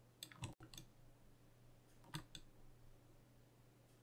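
Faint computer mouse clicks: a quick cluster of three or four just after the start and two more about two seconds in, over a low steady hum.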